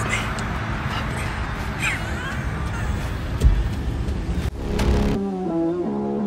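Steady car and street noise with a few brief, indistinct voice sounds. About five seconds in it gives way to music with held notes that step from one pitch to the next.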